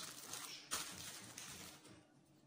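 Soft rustling and handling noise as props are picked up from the table, with a sharper rustle about two-thirds of a second in, dying away near the end.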